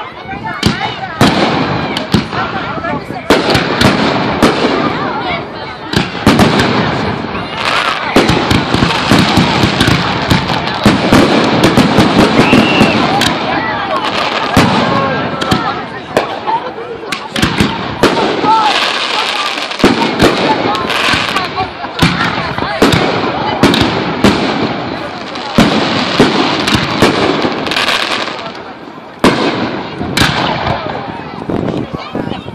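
Aerial fireworks display: shells launching and bursting overhead in a rapid, irregular string of loud bangs and crackles, dozens of reports through the whole stretch.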